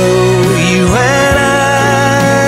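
Live song: a man singing long held notes over piano accompaniment, his pitch stepping up about a second in.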